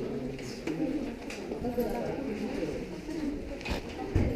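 Several visitors' voices talking at once in a murmur, echoing in a rock cave, with a short sharp knock near the end.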